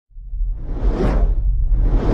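Cinematic whoosh sound effect over a deep, steady low rumble, rising out of silence to a peak about a second in and fading, with a second whoosh building near the end.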